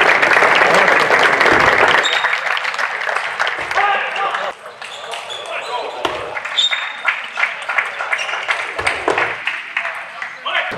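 A burst of audience applause for the first two seconds, then a table tennis rally: the plastic ball clicking sharply off the rackets and the table, with a brief shout around four seconds in and a few short squeaks.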